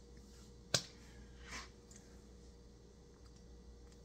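Quiet room tone with a steady low hum, broken by a single sharp click about a second in and a short, soft breath just after.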